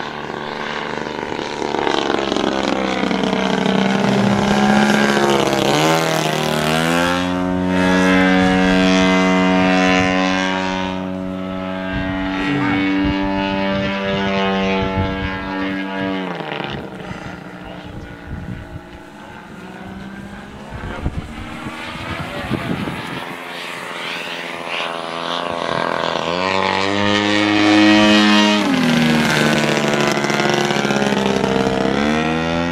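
Radio-controlled T-28 Trojan model airplane's motor and propeller running in flight. The tone rises and falls in pitch and loudness as it makes passes, loudest through the middle and again near the end.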